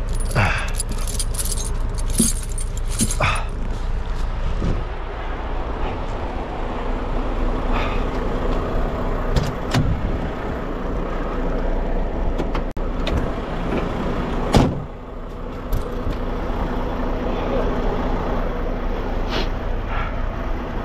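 Heavy diesel semi truck idling steadily. Metal tire chains clink and jangle for the first four seconds or so, and a single loud thump comes about fourteen and a half seconds in.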